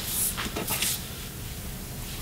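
Handheld microphone being handled as it is passed along: a few short rustles and bumps in the first second, then only low room hum.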